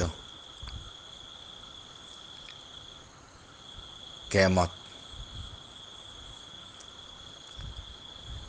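Insects trilling in the background: one steady high-pitched note that breaks off briefly about three seconds in. A brief spoken sound cuts across it a little past the middle.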